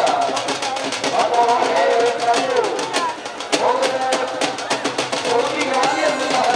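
Music of fast, steady drum beats, typical of the dhol played during kushti bouts, with a wavering melodic line over them.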